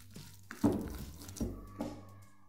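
Metal spoon stirring a stiff pão de queijo dough of tapioca starch, cream and cheese in a ceramic bowl, with three dull knocks of the spoon against the bowl, the loudest about half a second in.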